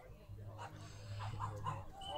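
A dog yapping faintly in the distance, a string of short, quick yelps, with faint voices in the background.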